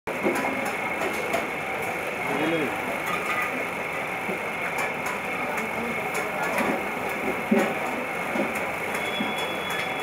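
Steady running noise of a turning potter's wheel as wet clay is shaped on it, with faint voices in the background.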